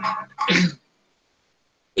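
A man makes a few brief voiced sounds in the first second, then complete silence.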